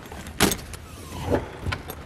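A hinged deck-compartment lid on gas struts being handled. There is a sharp click about half a second in, then a faint squeak that falls in pitch, a knock, and a couple of smaller clicks near the end.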